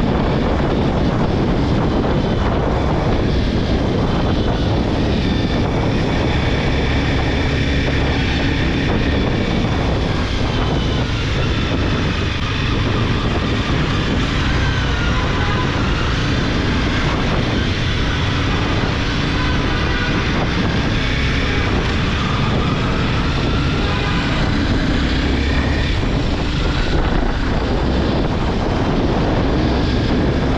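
Honda CBR250R single-cylinder engine running while the motorcycle is ridden, its pitch rising and falling with the throttle, under steady wind rush on the microphone.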